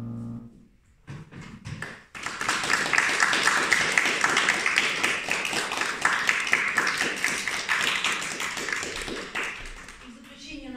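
A grand piano's last chord held, then released about half a second in. After a short pause with a few scattered claps, audience applause starts about two seconds in and fades near the end.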